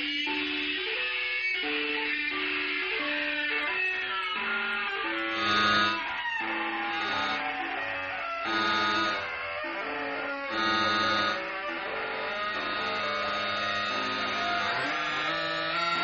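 Free-improvised music for electric guitars and electronics: held pitched tones shift step by step, about twice a second, in a looping pattern. Three louder swells come about 5, 8 and 11 seconds in, each with a low throb under a bright, buzzing top.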